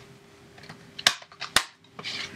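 Sharp clicks and taps from something handled close to the microphone, a few faint ones and then two loud, hard clicks about a second in and half a second later.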